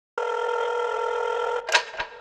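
A steady electronic tone with a buzzy edge, held for about a second and a half and cut off abruptly, followed by a short bright swish near the end.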